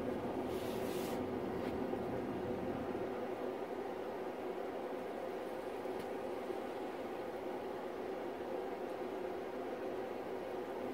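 Steady low background hum, with a brief hiss about a second in.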